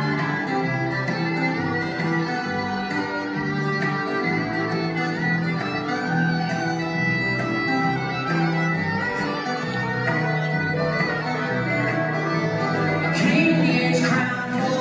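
A live string trio playing an instrumental passage: bowed fiddle over strummed acoustic guitar and plucked upright bass.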